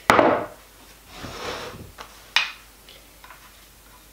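Objects being handled on a wooden worktop: a loud knock at the start, a brief rustle about a second in, then a sharp click a little over two seconds in, followed by a few faint ticks.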